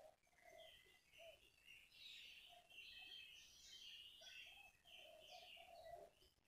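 Near silence, with faint birds chirping in the background in a run of short, irregular high notes.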